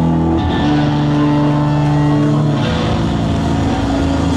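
Live rock band playing loud, the distorted electric guitars holding long sustained notes that shift pitch about half a second in and again near three seconds.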